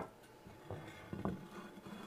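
A few faint, light knocks and scrapes as a textured ceramic tray is handled and turned on a wooden worktable.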